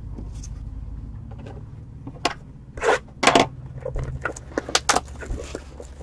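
Plastic shrink wrap crinkling and tearing as a sealed trading-card box is unwrapped by hand. It comes as a scattered run of short crackles and snaps starting about two seconds in, over a steady low hum.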